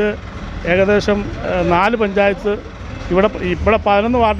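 A man talking, with a low steady rumble of road traffic behind the speech.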